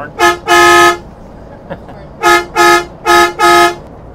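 Winnebago Forza motorhome's horn honking loudly three times in pairs, each a short toot followed by a longer blast on one steady tone, heard from inside the cab.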